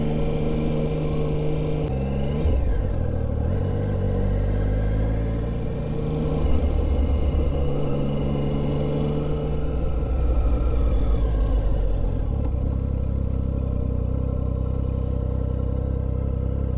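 Triumph Speed Triple 1050's three-cylinder engine with an Arrow exhaust, heard from the rider's position while riding at low road speed, its note rising and falling with the throttle several times.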